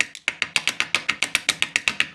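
Plastic pill cutter clicking in a rapid, even run of sharp clicks, about ten a second.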